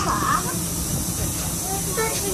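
A moving train heard from an open carriage window: the low running noise of the train under a steady hiss that starts at the beginning, with voices faint in the background.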